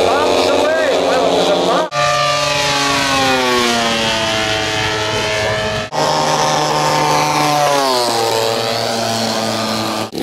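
Engines of large radio-controlled model warbirds flying by, the pitch dropping each time a plane passes, with voices over the first couple of seconds. The sound breaks off abruptly twice, about two and six seconds in.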